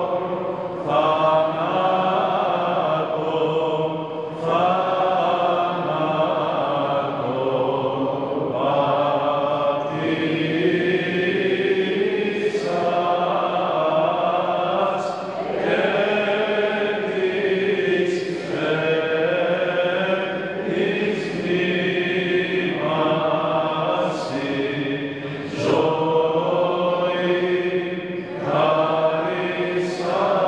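Byzantine chant: voices singing slow melodic phrases of a few seconds each, with long held notes, over a steady low drone.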